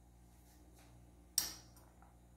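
A single sharp knock about one and a half seconds in, dying away quickly, over a faint steady hum.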